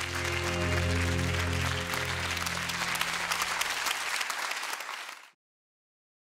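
Audience applause over closing music with sustained low notes; both cut off suddenly about five seconds in.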